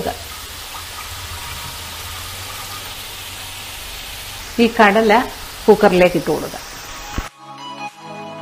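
Steady sizzling hiss from a hot pressure cooker on a gas burner as water is poured into it. A voice speaks briefly a little past the middle, and music cuts in near the end.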